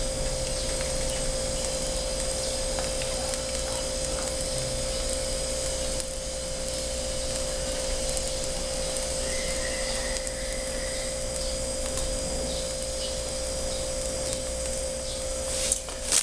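A steady machine-like whir with a constant low hum tone, unchanging throughout and cutting off at the end; a faint higher tone comes in briefly about two-thirds of the way through.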